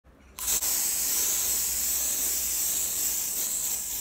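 Handheld garment steamer hissing steadily, starting abruptly just under half a second in.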